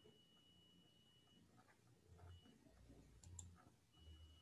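Near silence, room tone with a faint high steady tone that drops out partway through, and two faint sharp clicks a little over three seconds in.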